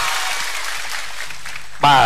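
Large studio audience applauding, an even clatter of many hands that fades slightly before a man's voice comes in near the end.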